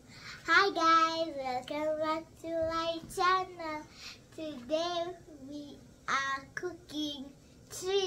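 A young girl singing unaccompanied: a run of held, slightly wavering notes broken by short pauses.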